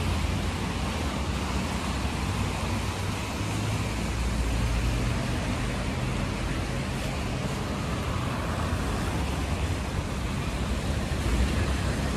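Steady traffic on a busy wet city avenue: cars and vans passing, with a low engine rumble and tyre noise on the wet road.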